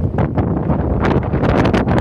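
Wind buffeting the microphone: a loud, rough rumble with irregular gusts.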